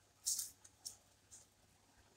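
Soft rustling and scraping of small cut-cardboard pieces being handled and slid apart from a rubber-banded stack: three short, faint rustles, the first the loudest.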